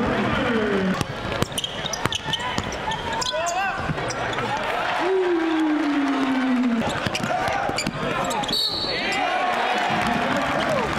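Basketball game sound: the ball bouncing on a hardwood court, sneakers squeaking and players and crowd calling out, with a short high whistle blast near the end.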